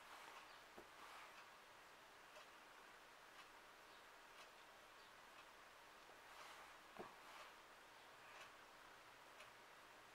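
Near silence: room tone with a few faint soft clicks and taps, the loudest about seven seconds in.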